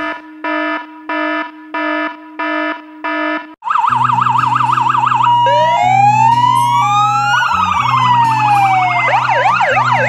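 A run of evenly spaced electronic beeps, about two a second, for the first three and a half seconds. Then electronic music starts: a steady bass note under warbling, siren-like synth lines that sweep up and down in pitch.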